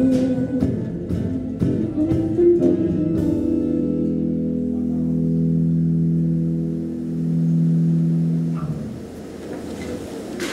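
Live instrumental passage on a nylon-string classical guitar: a few seconds of strummed chords, then a long held chord that rings on, swells and dies away near the end.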